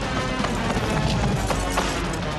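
Galloping hoofbeats of horses pulling a cart, over dramatic background film music.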